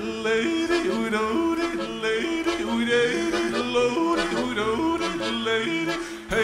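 Live music: a man yodeling into the microphone, his voice breaking and leaping between notes, over a sparse held accompaniment. The loud full band drops back as the yodel begins.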